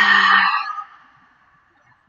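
A woman's long, forceful exhale through the open mouth, voiced like a sigh at first and then trailing off into breath, fading out within about a second and a half.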